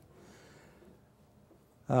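Near silence: faint room tone in a pause in a man's talk, until he begins to say "um" near the end.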